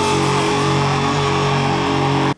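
Live rock band playing loudly, distorted electric guitars holding a steady, sustained chord.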